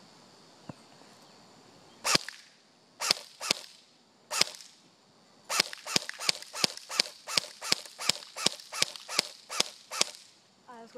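Airsoft MP5 electric gun firing single shots on semi-automatic, each a sharp crack: four spaced shots, then from about five and a half seconds in a steady string at about three shots a second.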